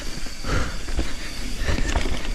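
Canyon Torque CF full-suspension mountain bike rolling fast down a dirt trail: tyre noise on the dirt with a run of knocks and rattles as the bike goes over bumps, and wind buffeting the camera microphone, getting busier about half a second in.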